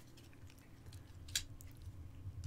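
Faint handling sounds of a small plastic wearable device being fitted back into its plastic bezel, with one light click about one and a half seconds in.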